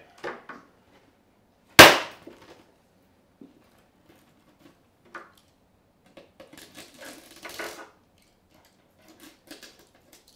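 Scored acrylic (plexiglass) sheet being snapped off over the edge of a clamped steel bar: one loud, sharp crack about two seconds in, then a stretch of crackling and scraping in the second half as the hanging piece is bent down and broken away, with a few small clicks near the end.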